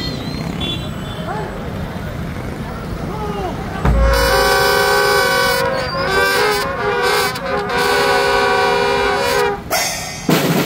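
Street noise and voices, then about four seconds in a single bass drum stroke and a marching band's brass horns sounding loud held chords, changing notes a few times, until just before the end.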